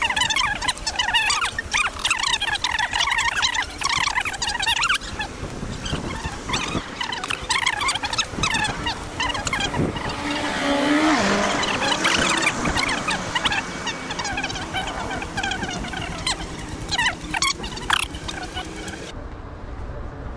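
Busy outdoor street ambience while walking: a dense chatter of short chirps over the first five seconds, a broad swell of traffic-like noise around the middle, and scattered sharp clicks and steps throughout.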